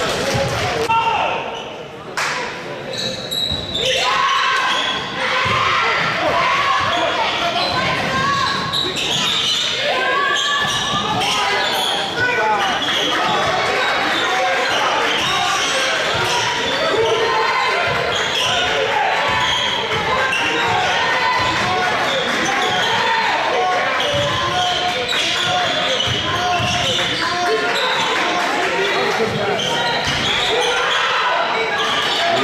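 Basketball game in a gymnasium: a ball bouncing on the hardwood court amid many overlapping voices from players and spectators, echoing in the large hall.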